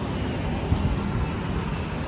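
Steady low rumbling background noise with a hiss, even throughout, with no distinct events.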